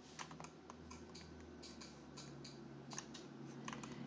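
Light, irregular clicking of a computer keyboard and mouse, a string of faint clicks over a low hum.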